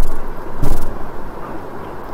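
Steady low rumbling background noise, with one brief louder rush about two-thirds of a second in.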